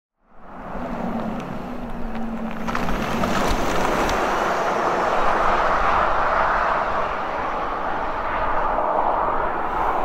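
A car travelling along a road toward the listener: a steady rush of tyre and engine noise that swells over the first few seconds, with a low hum early on.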